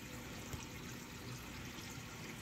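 Faint, steady water sound from a running reef aquarium's circulation, with a low, even hum underneath.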